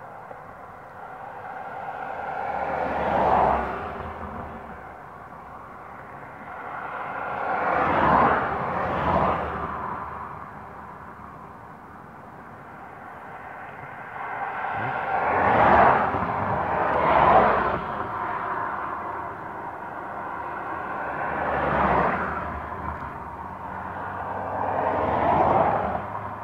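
Cars passing on a road one after another, each pass-by swelling up and fading away over a few seconds.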